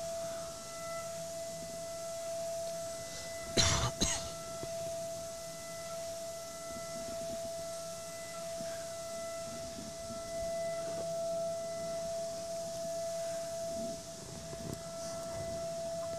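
High-speed CNC milling spindle running a 2 mm single-flute end mill as it ramps into a metal block, giving a steady, high-pitched whine at one pitch. A brief cough about three and a half seconds in.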